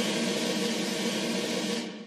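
Electronic music: a sustained hiss-like noise wash over faint held tones, with no beat, slowly dying away and fading out near the end.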